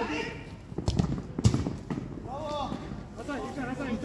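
A football kicked on artificial turf: two sharp thuds in the first second and a half, with players shouting between and after them.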